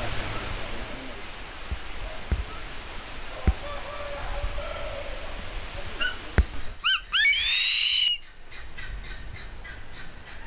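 Harpy eagle calling: a quick run of four short falling notes, then one long high wail about seven seconds in. A few sharp knocks come earlier over steady outdoor background noise.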